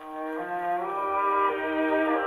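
Violin-led light orchestral music played from a Columbia 78 rpm shellac record through an acoustic horn gramophone, with the narrow, treble-limited sound of a mechanical reproducer. The music swells in from a quiet moment at the start and holds full volume.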